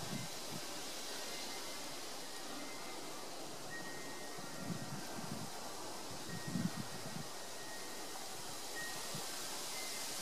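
Faint outdoor ambience: a steady hiss, with a few soft low rumbles about halfway through and a faint thin high tone coming and going.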